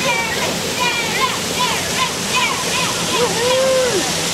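Steady rush of a waterfall, with people's voices talking and calling over it; one long drawn-out call near the end.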